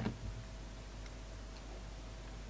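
Snap-off utility knife blade cutting into a bar of soap: a crisp click right at the start as a flake is sliced, a softer one just after, then only a faint tick about a second in.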